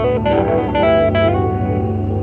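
Background music: a quick run of plucked guitar notes in the first second and a half over a steady, sustained low backdrop.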